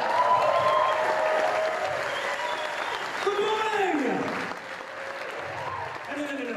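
Audience applauding, with voices calling out over the clapping; the applause thins a little near the end.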